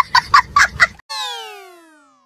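A young child's hearty, cackling laughter in about five quick bursts. About a second in it gives way to a falling, pitched sound effect that slides down and fades out.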